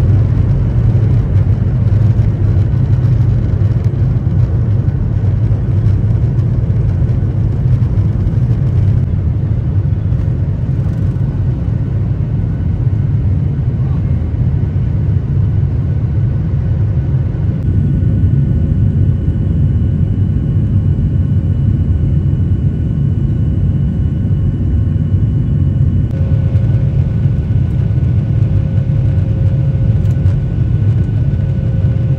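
Airliner's wing-mounted jet engines at takeoff power, heard from inside the cabin during the takeoff run and initial climb: a loud, steady deep rumble with a faint high whine over it.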